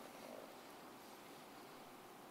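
Near silence: faint room tone of a large, hushed hall.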